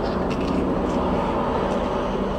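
Steady low hum inside a parked car's cabin, its engine running.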